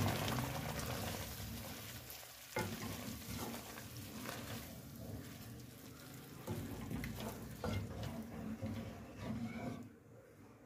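Boiled chickpeas sizzling in hot spiced oil and masala in a pan as they are stirred in with a spoon, which knocks and scrapes against the pan a few times.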